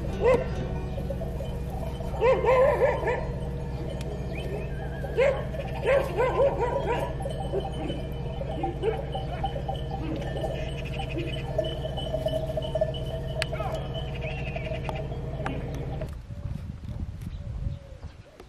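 A flock of sheep bleating, several animals calling together in bursts, over a steady low hum from an idling car engine that stops near the end.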